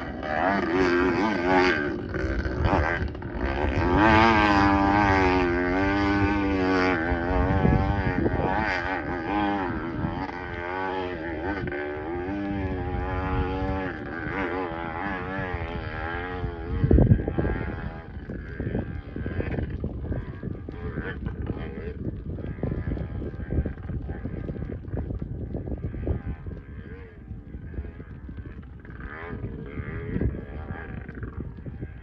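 Distant off-road motorcycle engine revving hard on a steep hill climb, its pitch rising and falling with the throttle. About 17 seconds in there is a single sharp thump, after which the engine sound is fainter.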